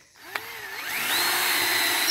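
Cordless drill starting with a click, its motor whine rising in pitch as it winds up to speed, then running steadily at one pitch.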